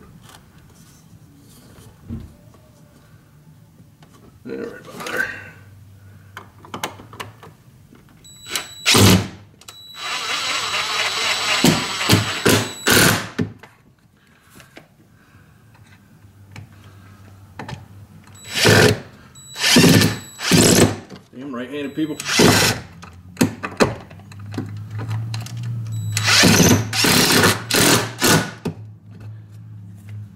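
Cordless DeWalt drill driving long screws through a 2x4 support into the wall, in repeated bursts of motor whine: a long run about ten seconds in, more around twenty seconds, and another near the end.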